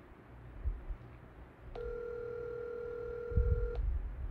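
Telephone ringback tone: one steady two-second ring, the sign of an outgoing call ringing at the other end, unanswered. Low thumps sound twice, under a second in and again near the end of the ring.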